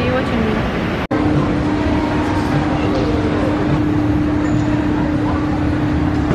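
Busy shopping-mall ambience: a murmur of background voices, with one voice briefly at the start. After an abrupt cut about a second in, a steady hum runs under the noise.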